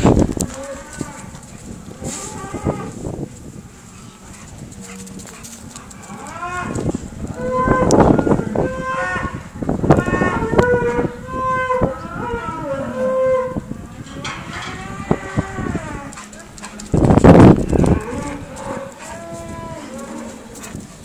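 Cattle mooing repeatedly, several calls overlapping in a run through the middle, with the loudest sound a few seconds before the end.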